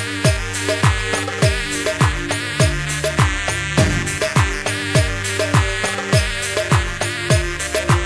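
Balkan-style electronic dance track: a deep kick drum with a falling pitch, about two beats a second, under a steady bass line and a bright, dense melodic lead.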